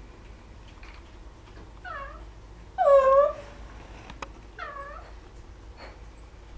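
A pet parrot making three short calls, each dipping and then rising in pitch. The middle call is the loudest and longest.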